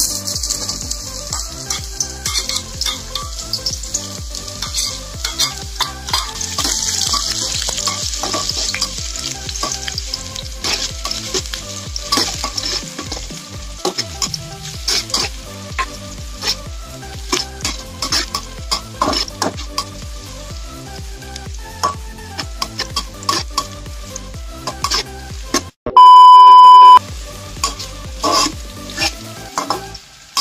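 Garlic and leeks sizzling in hot oil in a wok while a metal spatula scrapes and taps the pan as they are stirred; the sizzle is strongest in the first few seconds. Near the end a loud steady beep sounds for about a second.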